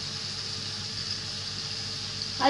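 Tomato and spice masala sizzling steadily in hot oil in a kadhai, an even high hiss with a faint steady hum underneath.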